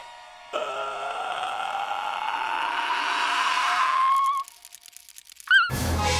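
A cartoon character's long rising wail of dread that grows louder for about four seconds and then cuts off. After a short pause a loud scream-like burst comes near the end.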